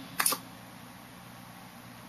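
Two quick sharp clicks close together just after the start, then a faint steady low hum of room tone.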